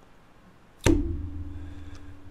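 A single sudden hit a little under a second in, followed by one low steady note that rings on and slowly fades.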